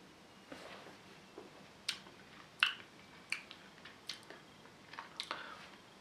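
A quiet sip from a glass, then a series of short, sharp lip and tongue smacks, about one every second, as the beer is tasted in the mouth.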